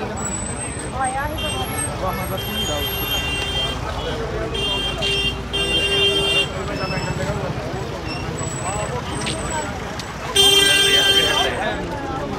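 Steady chatter of a large crowd on foot, with vehicle horns honking over it: several held toots in the first half and the loudest, about a second long, near the end.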